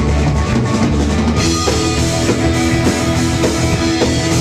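Live rock band playing an instrumental passage loudly: electric guitar and electric bass over a drum kit.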